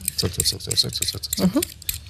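Vegetable peeler scraping along a carrot in a run of quick, short strokes, with a brief voice sound about one and a half seconds in.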